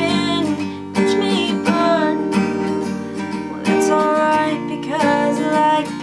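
Steel-string acoustic guitar strummed in a slow ballad pattern, with a young woman singing long held notes over it.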